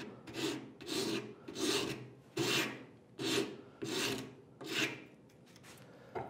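Hand rasp cutting across a piece of wood clamped in a vise, roughing down the surface. It goes in about seven steady push strokes, a little over one a second, and stops about five seconds in.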